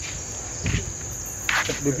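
Crickets trilling steadily, a continuous high-pitched drone; a man's voice starts near the end.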